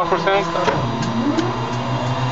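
A Twin Otter's Pratt & Whitney PT6A turboprop being spun by its starter during engine start, heard inside the cockpit: a steady hum with a whine that rises in pitch about a second in. The gas generator is at about 12%, just before fuel is brought in for light-up.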